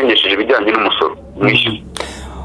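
Speech only: a person talking, with a brief pause a little after a second in.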